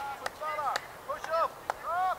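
High voices shouting short calls over one another, with a few sharp clicks in between.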